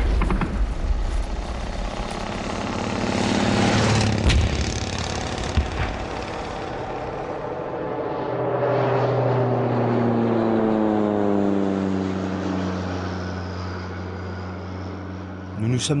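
Radio-drama sound effects: sharp shots near the start and again about four seconds in, over a noisy wash, then a vehicle engine whose pitch slides down and settles into a steady low hum.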